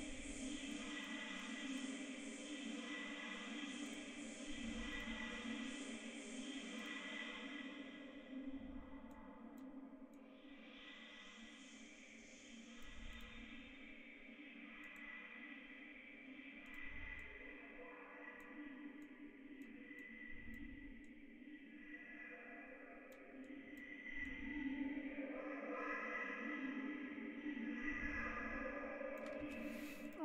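A sustained, reverberant atmospheric pad played by iZotope Iris 2 from a looped, pitched-down vocal-phrase sample, holding several steady tones with faint low pulses every few seconds. Its top end dulls about eight seconds in and shifts again near the end as the filter and reverb are changed.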